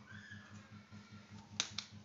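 Two sharp clicks in quick succession near the end, the loudest sounds, following a drawn-out high-pitched call that falls slightly in pitch, over a steady, pulsing low hum.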